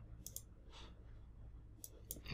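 A few faint clicks of a computer mouse and keyboard: a quick pair near the start and another near the end, over a low room hum.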